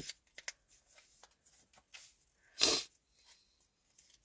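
A pause in a woman's talk: a few faint clicks, then one short, sharp intake of breath about two and a half seconds in.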